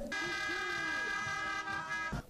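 A single steady horn-like tone held without change for about two seconds, with faint voices underneath.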